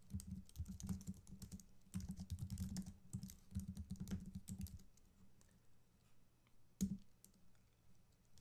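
Typing on a computer keyboard: quick runs of keystrokes for about the first five seconds, then a pause and one louder single key press near the end.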